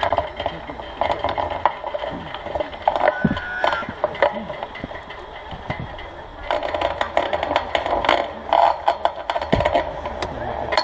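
Knocks, rattles and scrapes of people climbing into a wicker hot-air balloon basket and handling the burner gear, with voices in the background.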